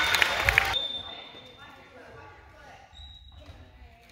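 Gymnasium noise during a volleyball match: voices and sharp knocks, echoing in the hall. It is loud for the first second, then drops off suddenly, leaving faint voices.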